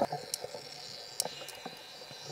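Underwater ambience on a dive: scattered sharp clicks, several a second apart, over a faint steady hiss, with a louder rush ending right at the start.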